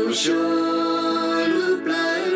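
One voice singing slowly in long, held notes that slide between pitches, with a brief breath near the start.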